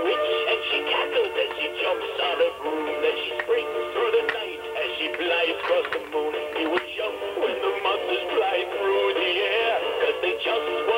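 Animated vampire figure singing a song through its small built-in speaker, with a thin, tinny sound.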